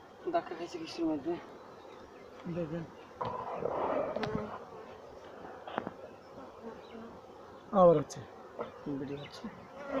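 Honey bees buzzing around open hives, with single bees passing close by in short buzzes that slide in pitch; the loudest pass comes near the end.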